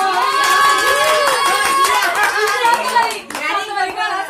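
A small group clapping rapidly while women's voices cheer over it in long, held calls. The clapping breaks off a little over three seconds in.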